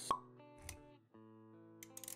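Motion-graphics intro sound effects over soft background music: a sharp pop just after the start, then a low thud about half a second later, with held music notes continuing underneath.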